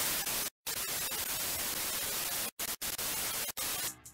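Television static: a loud, even hiss of white noise, the sound effect of a lost signal. It drops out for a short silent gap about half a second in and for a few brief gaps in the second half, then cuts off just before speech resumes.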